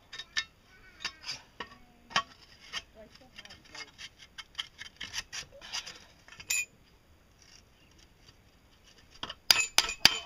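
Light metal clinks and scrapes as a stainless steel tube is worked into a shovel's steel socket. Near the end, quick hammer blows on the metal begin and are the loudest sounds.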